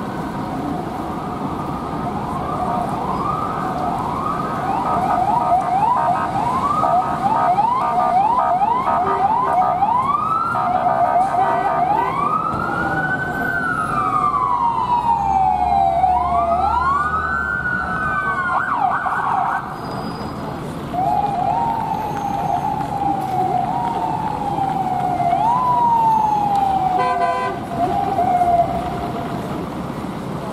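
Russian police car sirens sounding over city traffic. First comes a fast yelp, then slower wailing sweeps with two sirens overlapping in the middle. Later a siren rises sharply and falls slowly about every two seconds, with a brief buzzing blast near the end.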